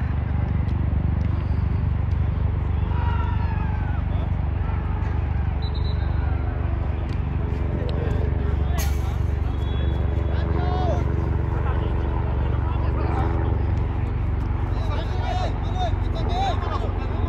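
Scattered distant shouts and voices of players across an outdoor soccer pitch over a steady low rumble, with one sharp knock about nine seconds in.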